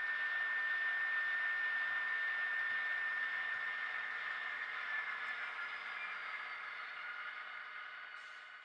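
Sound-equipped HO scale diesel locomotives idling through their small onboard speakers: a steady hissing hum with a few held tones, slowly fading out.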